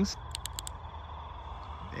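Flashlight switch clicked four times in quick succession, about half a second in, as the light is switched into spot-and-flood mode.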